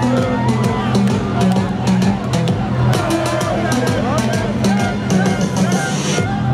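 Loud music with a drum beat and bass line played over a big outdoor PA, with a large crowd singing and shouting along.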